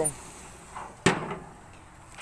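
A single sharp knock about a second in, with a short ringing tail: a propane gas grill's lid being shut down over the steak.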